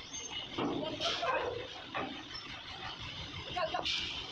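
Men's voices calling out while steadying a crane-hung steel truck body, with a short sharp knock just before the end.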